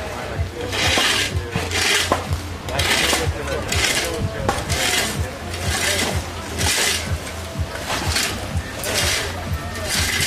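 Shovels scraping and scooping into dry, loose soil, a short gritty scrape roughly once a second.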